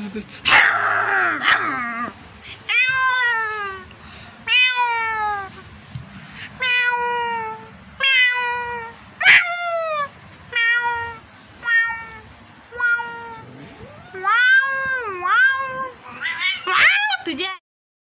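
A calico cat meowing over and over, about a dozen drawn-out meows that each fall in pitch. One call near the end wavers down and back up into a yowl, and the calls cut off suddenly just before the end.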